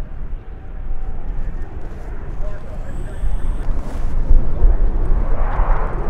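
MiG-29 Fulcrum's twin Klimov RD-33 turbofans making a deep jet rumble as the fighter banks through its display, growing louder from about four seconds in to a peak near the end.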